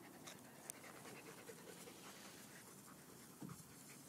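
Faint dog panting during rough play between two dogs, with a few small clicks early on and a brief low sound about three and a half seconds in.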